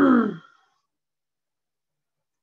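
A person's brief voiced throat-clear, falling in pitch, in the first half second.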